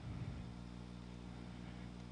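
Faint steady low hum with a soft hiss: the recording's background noise during a pause, with no clicks or other events.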